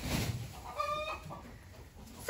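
A chicken calling once, a short call held on one pitch about a second in. There is some low handling noise at the start.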